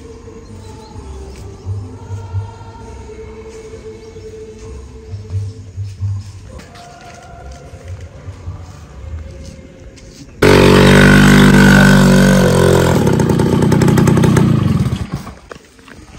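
Faint music with held notes, then about ten seconds in a small motorcycle engine sounds suddenly and loudly close by. It runs for about five seconds, its pitch falling, before it fades.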